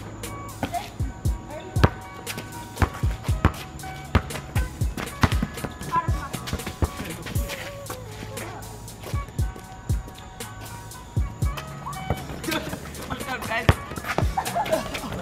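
A basketball dribbled and bounced on a concrete court, a string of sharp irregular thuds, over a background music beat.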